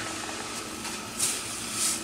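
A hand shifting shredded newspaper and grass clippings in a plastic tub: two soft rustles, about a second in and near the end, over a steady low hum.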